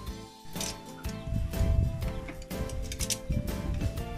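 Background music with a steady beat, about two strikes a second.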